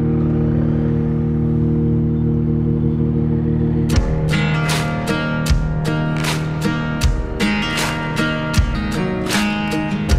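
Background music led by guitar: a held chord for the first few seconds, then a steady strummed rhythm that starts about four seconds in.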